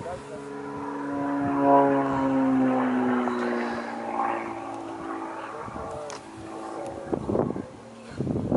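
Propeller engine of an aerobatic airplane passing through a manoeuvre, its pitch sliding down as it goes by. It is loudest about two seconds in, then fades.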